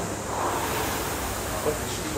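Indoor air rowing machine's fan flywheel whooshing through a stroke, swelling about half a second in and easing off as the rower recovers.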